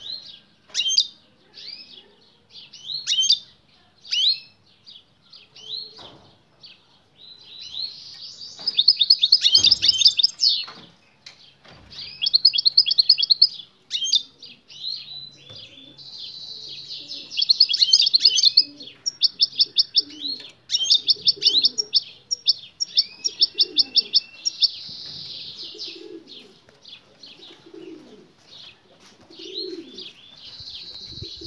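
European goldfinch calling and singing: scattered sharp chirps at first, then loud bursts of rapid, buzzy trilled song that recur through the rest of the stretch. The call of a female goldfinch is meant to set the male singing.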